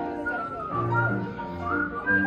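Music with a whistled melody: a high line gliding up and down over held lower notes.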